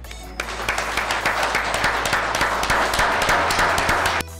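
Audience applauding, many hands clapping together, starting about half a second in, over a quiet music bed.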